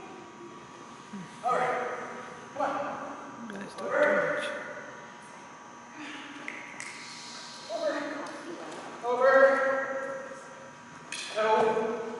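A man's voice calling out short commands to a dog several times, echoing in a large hall, with a brief hiss about seven seconds in.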